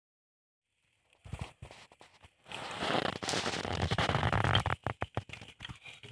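Charcoal grill with chicken cooking over glowing coals: sharp crackling pops from the fat on the coals, starting about a second in. In the middle there is a louder, denser stretch of sizzle, and a quick run of sharp pops near the end.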